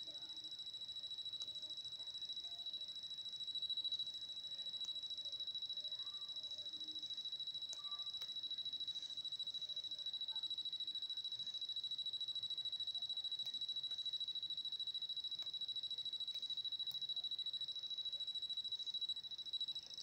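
A faint, steady high-pitched electronic whine, with a few soft clicks.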